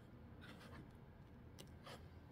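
Faint scraping and light clicks of a glued wooden handle being twisted into its hole in the pencil box end, heard about half a second in and again near the end, with near silence between.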